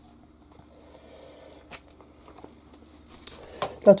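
Faint handling noise with a few light clicks as a plastic lint filter is fitted back into a washing machine drum.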